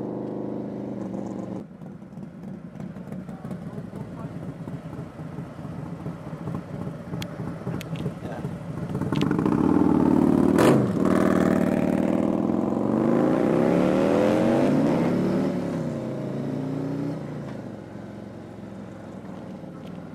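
Harley-Davidson Electra Glide Standard's V-twin engine running, getting louder partway through and then pulling away, its pitch rising in several sweeps as it speeds up through the gears before dropping back. A single sharp knock comes about halfway through.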